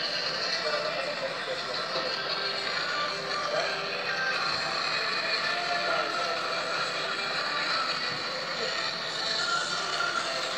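Music and voices from a video of a performance in a hall, playing through a smartphone's small speaker.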